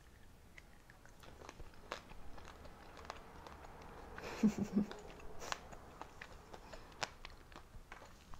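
A person chewing a small piece of candy with a crunchy sprinkle coating and a soft chewy centre: quiet crunches and mouth clicks, with a brief hummed "mm" about halfway through.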